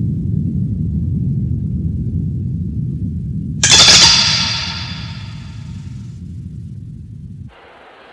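Cartoon battle sound effects: a steady low rumble, then about halfway through a sudden sharp metallic swish with a ringing tail that fades over a few seconds, as a large curved blade cuts through the dust. The rumble cuts off near the end.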